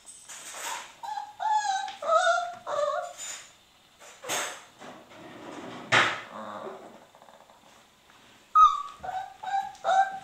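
Leonberger puppy whining and yipping in short calls that bend in pitch, a quick run of them in the first few seconds and again near the end, with two short, harsher noisy bursts in between.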